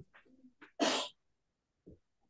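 A single short, sharp burst of breath noise from a person on a video call, about a second in, in the manner of a sneeze or forceful exhale into a microphone.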